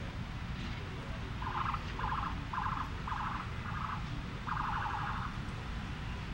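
Car alarm sounding in six short bursts of a rapidly pulsing tone, starting about a second and a half in, the last burst longer than the rest, over a steady low rumble.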